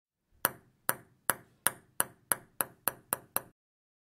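A table tennis ball bouncing on a table: ten sharp clicks that come gradually quicker, then stop about three and a half seconds in.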